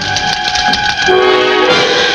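Orchestral film score with brass holding long chords. Shorter lower notes move beneath them about halfway through.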